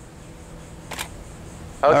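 A digital SLR camera's shutter fires once, a single sharp click about a second in.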